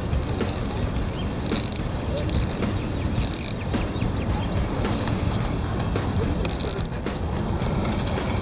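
Spinning reel's drag clicking in about five short bursts as a fish pulls line off, over a steady low rumble of wind on the microphone.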